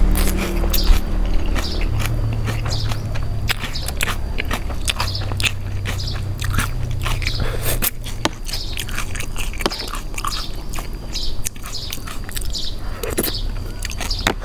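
Close-miked chewing of a mouthful of instant noodles in a spicy chicken-feet salad: many small wet clicks and smacks throughout, over a low steady hum.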